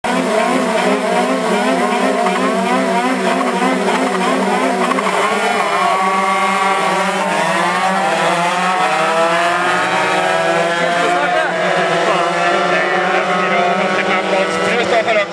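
A pack of 125cc two-stroke crosskart engines held at high revs on the start line, then rising in pitch together as the karts launch about five seconds in and accelerate away, the engines climbing up through the gears.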